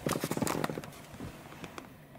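Handling noise from a dash cam's rear camera and its wire: a quick, irregular run of small plastic clicks and rattles, busiest in the first second and then fading.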